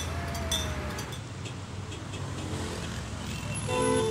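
Steady road traffic, with cars passing on a highway. A brass hand bell clinks once about half a second in, and music starts just before the end.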